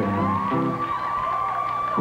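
Live audience laughing, cheering and whooping over the band's backing music, with one long steady high tone held through the pause.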